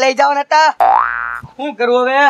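A cartoon 'boing' sound effect: one springy tone sliding upward in pitch for about half a second, set between bursts of a man's speech.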